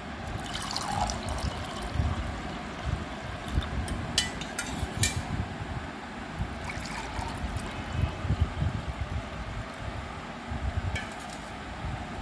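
Blended beetroot-and-carrot juice pouring from a jug into a glass, filling it. A few sharp clicks, like glass lightly knocking, come around the middle and again near the end.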